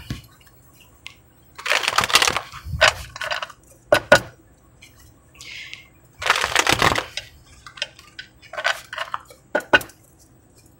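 A deck of tarot cards being shuffled by hand, in a series of short bursts with brief pauses between.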